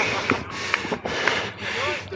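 Rushing wind and heavy breathing on a player-worn microphone, swelling and fading in gusts. Faint distant voices come in near the end.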